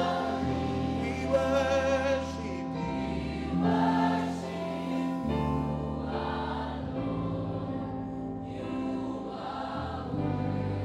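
A praise team and congregation singing a gospel worship song, led by a male singer on microphone, over low held chords that change every two or three seconds.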